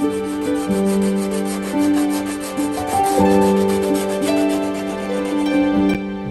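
Background music of slow, sustained chords, with a soft rubbing of hands working over a wooden violin top plate beneath it.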